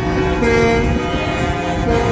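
Truck air horns honking in long steady blasts from a passing convoy, over the low rumble of the traffic. One blast starts about half a second in, and a new one sounds near the end.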